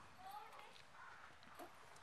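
Near silence, with faint voices in the background.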